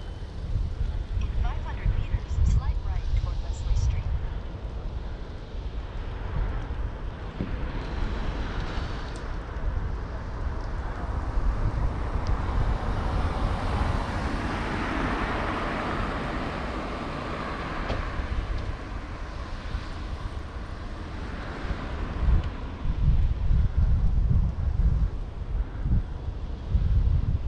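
Wind buffeting the microphone of a camera on a moving bicycle, a gusty low rumble throughout. A car passes close by in the middle, its tyre and engine noise swelling to a peak about fifteen seconds in and fading away.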